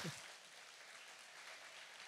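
Congregation applauding, faint and steady.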